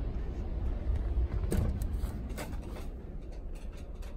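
Low rumble of a handheld phone camera being carried, with two short knocks about a second and a half and two and a half seconds in as a pair of swinging double doors is pushed open.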